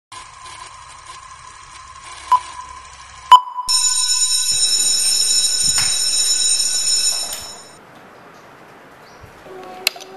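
Film-leader countdown intro sound effect: a faint steady beep tone with two sharp clicks about a second apart, then a loud high-pitched whine over hiss for several seconds that fades out.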